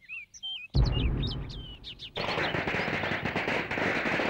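Firecrackers going off over chirping birds: a sudden loud bang about three-quarters of a second in, then a dense, rapid crackle like a string of crackers that runs on to the end.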